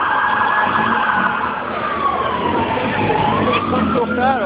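Police car siren wailing: one slow sweep falling in pitch over about three seconds, then starting to rise again, over steady background noise.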